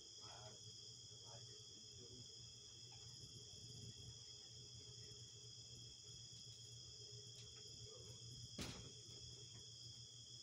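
Faint, steady chirring of crickets, with a low hum beneath and a single sharp click about eight and a half seconds in.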